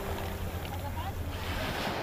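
Sea waves breaking and washing over a shallow gravel shore, a steady rush of surf.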